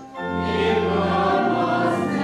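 A group of voices singing a church hymn together with organ accompaniment; a short break between phrases at the start, then the next phrase begins and is held.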